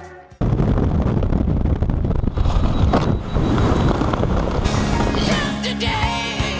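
Wind rushing over the microphone of a camera under an open parachute canopy, a loud, dense rumbling noise that cuts in sharply just after the start. Rock music fades out at the very start and comes back in near the end.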